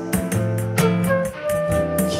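Instrumental passage of a live band: acoustic guitar with flute and regular hand-percussion strokes from a pandeiro.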